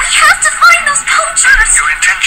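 Music with singing from a television's speakers, picked up from across the room, sounding thin with little bass.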